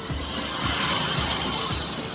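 Motorcycle tricycle passing close by, its noise swelling and then fading over about a second and a half. A steady beat of background music plays under it.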